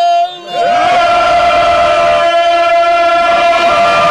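A man's voice holds a long note that breaks off. Less than a second later a group of men come in together, singing loud, long held notes in harmony.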